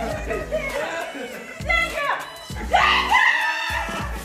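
People screaming and laughing over background music, with two loud shrieks near the middle.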